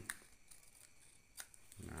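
Scissors snipping through a paper sewing pattern, quiet, with two sharp snips about a second and a half apart.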